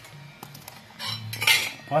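Stainless steel kitchenware clattering: a steel ladle, lid and plate knocking and scraping against each other. A few light clinks come first, then a louder clatter in the second half.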